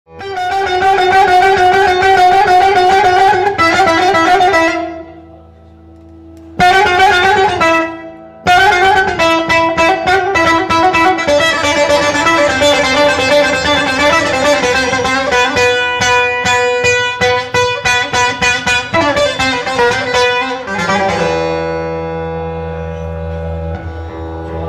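Bağlama (long-necked Turkish saz) played with a pick in a bozlak-style free-rhythm introduction: fast repeated notes with wavering pitch. It drops back briefly about five and again about eight seconds in, then settles onto a long held ringing chord near the end.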